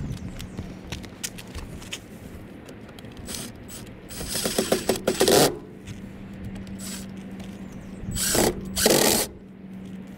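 A cordless drill driving in the screws of a swamp cooler motor's support clamps, running in two short bursts: about four seconds in and again near the end. Light clicks of handling come before the first burst.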